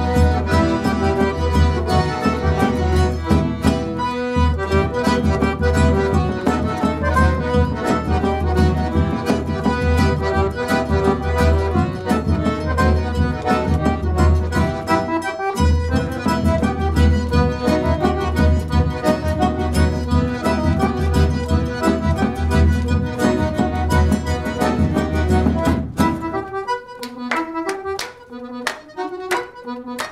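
Four piano accordions playing an instrumental piece together, a full texture of chords and melody over a steady bass. About four seconds from the end the music thins out as two players stop and clap their hands in time, while the others keep playing.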